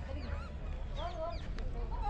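Bird calls: a few short, sharp squawks that sweep in pitch, about a second apart, over a steady low rumble.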